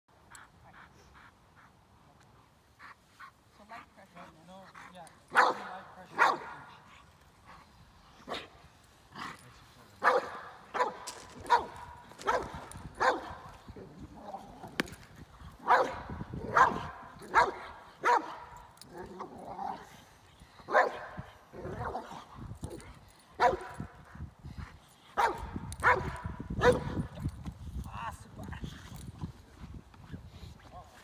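A Boxer barking in loud, irregular bursts, a dozen or so over half a minute, at a decoy during protection (bite-work) training.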